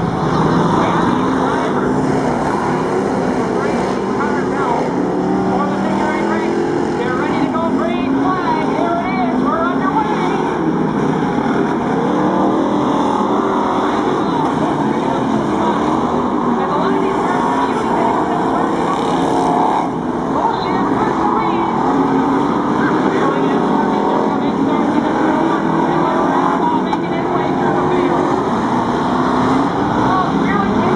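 Several dirt-track stock cars racing at once, their engines blending into one loud, continuous sound. Engine notes rise and fall as the cars go round the track.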